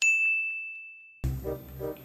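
A single bell ding struck right at the start, one clear ringing tone that fades away over about a second. Background music comes in a little over a second in.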